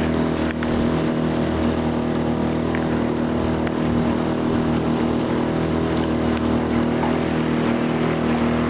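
Outboard motor of a small aluminium boat running steadily at an even cruising speed, its pitch holding constant, over a rushing noise of water and wind.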